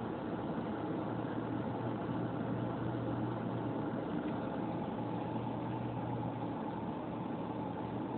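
A car idling, heard from inside its cabin: a steady low hum with an even hiss above it.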